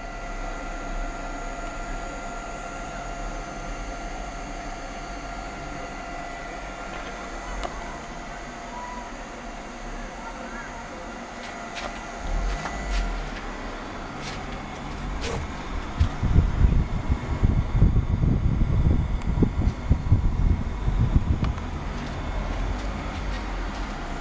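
Homemade CNC mill running: a steady whine of several held tones from its spindle and stepper motors as an insert face cutter mills a T-slot nut. From about two-thirds of the way in, loud irregular low rumbling and thumps take over.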